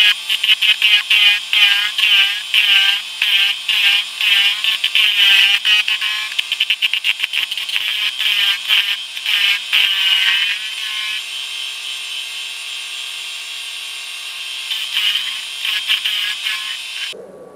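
Wood lathe turning a live oak burl blank round with a hand-held turning tool, the audio sped up six times: a fast, high chattering of interrupted cuts for about the first ten seconds, then a steadier, even sound as the blank runs round.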